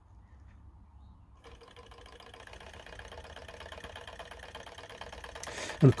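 Small model Stirling (hot-air) engine kit, stopped by hand and started again: after a brief quiet, its fast, even ticking rattle from the piston and linkage starts up and grows louder as it picks up speed.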